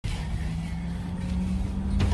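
A steady low hum with a rushing noise over it, starting abruptly.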